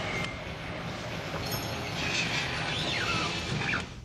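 Horror film soundtrack: a dense, rumbling wash of sound effects and score with gliding high squeals near the end, cutting off abruptly just before the close.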